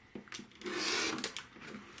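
A rotary cutter blade rolling along the edge of a plastic ruler and slicing through two layers of cotton fabric on a cutting mat: one brief, crisp scraping cut about half a second in, with a few light clicks of handling around it.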